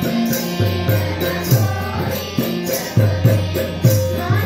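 Devotional bhajan sung by a children's group in a chant-like style, with a steady harmonium drone, rhythmic hand-drum strokes and wooden kartal clappers keeping the beat.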